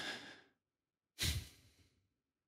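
A man breathing close into a microphone: a long breath out trailing away in the first half second, then a short, sharp breath about a second and a quarter in.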